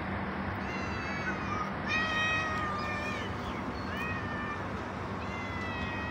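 Cats meowing, about five separate meows, the loudest about two seconds in and a longer drawn-out one near the end, over a steady low background hum.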